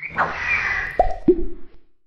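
Cartoon splat sound effect: a wet, noisy rush with two quick plops dropping in pitch about a second in, the second lower than the first.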